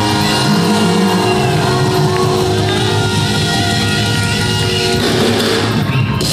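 Live gospel band playing, with held keyboard and guitar chords over bass and drums; a cymbal-like wash comes in near the end.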